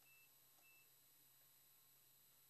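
Near silence: faint room tone with a steady low hum and two short, faint high beeps in the first second.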